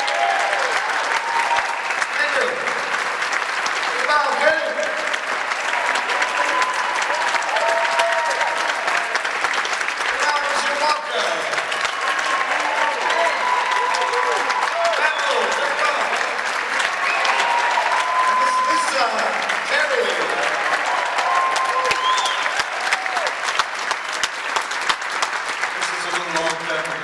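Concert audience applauding, with voices calling out over the clapping, just after a jazz number ends.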